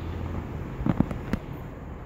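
Steady low outdoor hum, with three short sharp pops about a second in.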